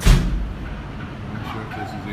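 A single sudden thump at the very start, with a low rumble that fades within about half a second, over a steady low hum and faint distant voices.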